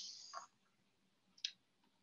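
Near silence, broken by a single short, faint click about one and a half seconds in.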